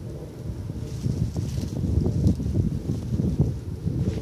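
Wind buffeting the microphone: an irregular, gusty low rumble that grows stronger about a second in, with faint rustling over it.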